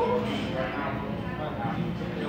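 Indistinct background chatter of other people's voices, with no clear words.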